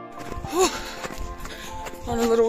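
Running footsteps of a jogger, with a short voiced sound about half a second in, over faint music.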